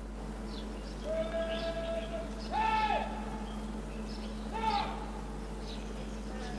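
A parade-ground drill command shouted in drawn-out syllables: one long held note, then two short, higher, louder barked calls.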